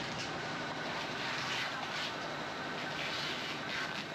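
Steady ambience of a busy covered wet market: an even rushing noise with faint, indistinct activity and no clear single event.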